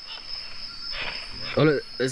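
Night insects in the rainforest calling in one steady, high-pitched drone. A man's voice cuts in briefly near the end.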